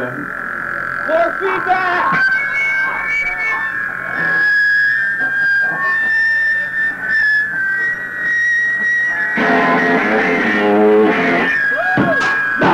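Distorted electric guitar in a live punk-rock set: a steady high tone is held for about nine seconds over scattered guitar noises and a few voice sounds, then the full band comes in louder near the end.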